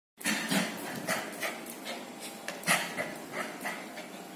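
Lhasa Apso puppy at play, making a quick string of short breathy sounds, two or three a second, with no barking.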